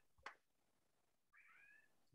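Near silence, broken by a single mouse click about a quarter second in, which confirms the Stop button. Near the end comes a faint, high cry that glides up and then down in pitch, lasting about half a second.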